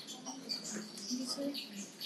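Small birds chirping in short, high, repeated notes, with faint low murmuring voices under them.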